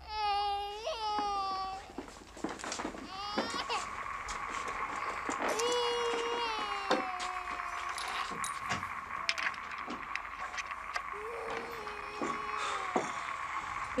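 An infant crying in a string of long, wavering wails, four spells of it. A steady high-pitched tone runs underneath from about three seconds in.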